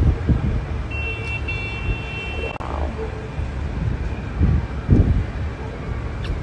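Wind buffeting the phone's microphone over a low hum of distant city traffic. About a second in, a distant high horn sounds steadily for about a second and a half.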